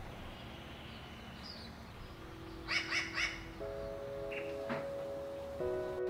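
A dog barks three times in quick succession about three seconds in. Soft music with held notes starts just after.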